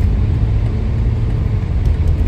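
Inside the cabin of a 2021 BMW M4 Competition on the move: a steady low rumble of its twin-turbo inline-six and the road, heard from the driver's seat.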